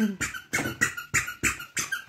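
Toy foam pogo jumper squeaking with each bounce as a child jumps on it, a quick regular run of squeaks about three a second.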